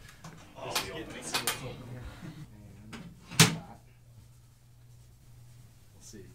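Knocks and clatter of the metal doors and panels of a tabletop compartment fire-dynamics prop being handled, with one loud sharp bang about three and a half seconds in, and brief voices.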